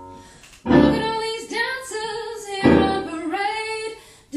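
A woman singing a song with instrumental accompaniment, a number from a musical play. It opens softly, the voice and backing come in strongly just over half a second in, and a second loud phrase begins nearly three seconds in.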